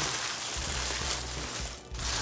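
Paper wrapping rustling as a wrapped garment is opened, a steady crinkling that dies away shortly before the end.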